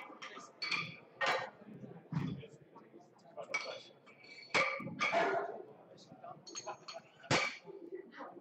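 Competition barbell weight plates being loaded and unloaded on a bench-press bar: a run of irregular metal clanks and clinks, plate on plate and plate on bar, each leaving a short ring. The loudest knocks come about halfway through and near the end.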